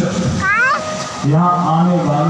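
A voice singing a devotional bhajan over a sound system: a sliding phrase about half a second in, then a steady held note through the second half.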